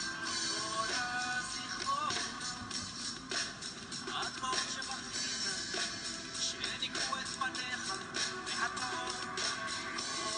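A drum kit played along with a recorded song: a steady beat of drum and cymbal hits over the song's backing track.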